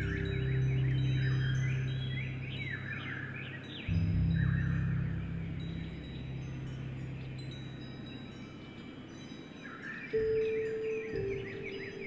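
Wind chimes ringing, with birds chirping throughout, over slow piano music: a low note struck about four seconds in rings on and fades, and higher notes come in about ten seconds in.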